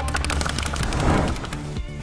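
A rapid drum roll of fast, even hits within music, easing off near the end.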